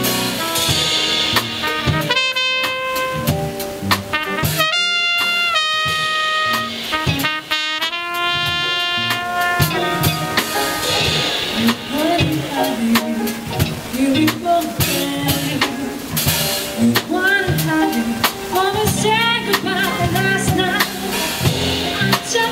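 Live jazz band with trumpet, piano, electric guitar, bass and drums. The trumpet plays long held notes in the first half, then the melody moves into quicker, shorter phrases over the drum beat.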